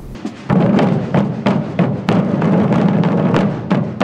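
Massed procession drums (tambores) beaten together by many hooded drummers, a continuous rattling roll with louder accented strokes a few times a second.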